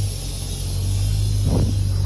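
A heavy vehicle's engine idling with a steady low hum.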